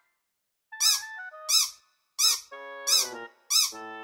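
Cartoon sound effect of squeaky footsteps: a string of short squeaks, each rising and falling in pitch, about one every 0.7 seconds, with short held music notes stepping along between them.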